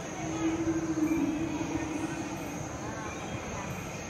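Background chatter of people in a large hall, with a low, steady drawn-out tone that starts just after the beginning, lasts about two seconds and dips slightly in pitch near its end.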